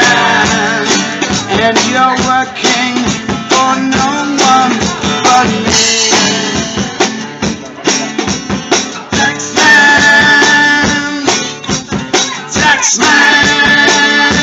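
Live band playing: strummed acoustic guitars over a drum kit, with sustained melody notes held over the rhythm.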